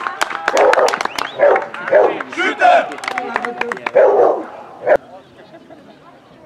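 A dog barking loudly about five times, short separate barks, over scattered hand clapping from spectators. The sound dies down after about five seconds.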